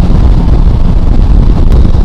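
Wind buffeting the camera microphone on a motorcycle riding at road speed: a loud, steady low rumble, with the bike's running noise mixed in beneath.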